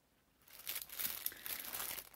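Crinkling and rustling of something being handled, such as packaging or paper. It starts about half a second in as an irregular, crackly run of small noises.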